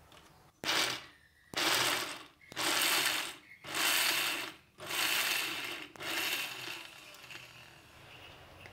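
Small electric mixer grinder run in about six short pulses of roughly a second each, grinding peanuts with garlic, ginger and green chillies into a coarse masala paste.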